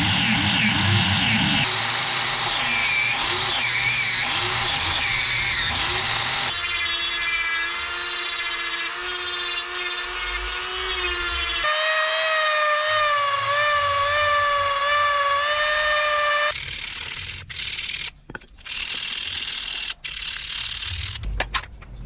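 Angle grinder clamped in a bench vise, running with a sanding disc while a small knife piece is pressed against it; its whine wavers with the load and jumps in pitch in sudden steps. It stops about two-thirds of the way through, leaving a few clicks and knocks of handling.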